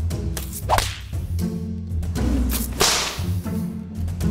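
Background music with swish sound effects laid over it: a short, sharp swish just under a second in, then a bigger rising whoosh that peaks near the three-second mark.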